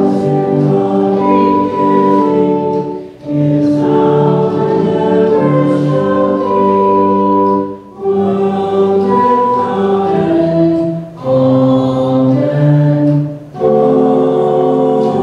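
A church choir or congregation singing a hymn together, in phrases of three to five seconds with short breaks between.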